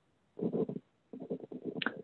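Low, indistinct vocal sounds from a participant over a video-call connection. A short muffled burst comes about half a second in, then a quick run of low pulses leads up to speech.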